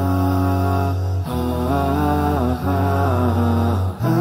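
Background intro music sung without instruments: layered voices hold long notes over a low sustained hum, shifting to new notes in steps with brief breaks between phrases.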